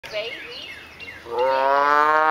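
Tiger giving one long, loud call starting just over a second in, its pitch rising slightly as it holds. Faint, falling chirps come before it.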